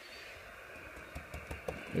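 Steady faint hiss of receiver static from an Icom IC-706MKIIG transceiver tuned to 27.540 MHz on the 11-metre band, with a few faint clicks. The band is quiet, with no strong signal coming through.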